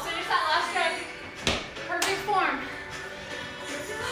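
Background music with a singing voice, and a sharp knock about one and a half seconds in.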